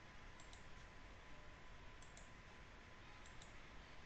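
Faint computer mouse clicks, three quick pairs of clicks spaced about a second and a half apart, over near-silent room hiss.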